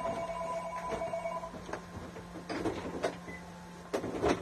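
A steady low hum, with a held two-note tone for about a second and a half at the start, then a few faint knocks.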